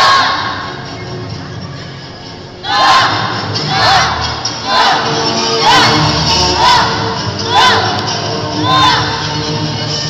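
A group of children shouting together in unison in time with their taekwondo moves: one shout at the start, then, from about three seconds in, a run of about seven shouts roughly a second apart.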